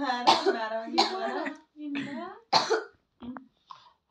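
Young women's voices and a cough, the voices fading away near the end.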